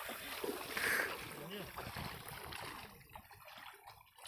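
Shallow seawater sloshing and trickling around people wading, fading toward the end, with faint voices in the first couple of seconds.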